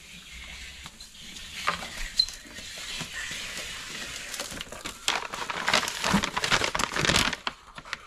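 Paper and packaging rustling and crinkling as items in a wicker basket are rummaged through and a kraft paper envelope is handled. The crinkling grows louder and busier about five seconds in, then stops a little after seven seconds.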